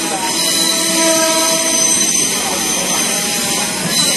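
Train noise heard inside an old railway passenger coach with open windows: a steady, loud rushing, with a few faint steady tones about half a second to two and a half seconds in.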